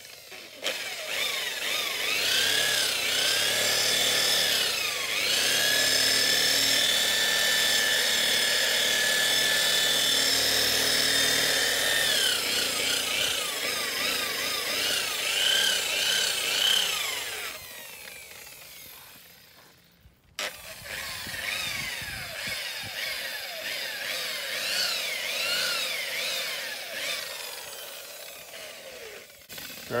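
Electric rotary polisher with a lambswool bonnet running on a fibreglass hull, buffing sanded gel coat with cutting polish; its motor whine rises and falls in pitch as the pad is pressed on and eased off. It winds down about 17 seconds in, stops briefly, and starts again just after 20 seconds.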